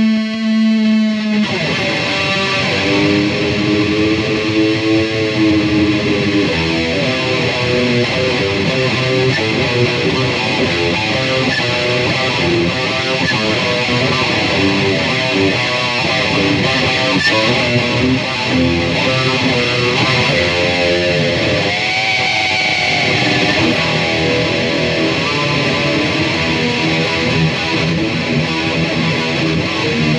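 Black Epiphone Les Paul Standard electric guitar with GFS pickups, played with distortion. A held note rings for about the first second and a half, then gives way to continuous hard-rock riffing and lead lines with bent notes.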